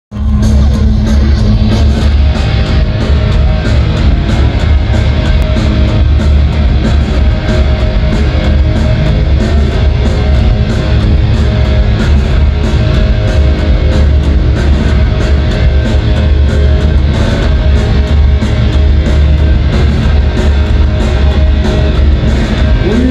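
Live punk rock band playing an instrumental passage at high volume: distorted electric guitars and bass over a steady driving drumbeat, heard from within the crowd.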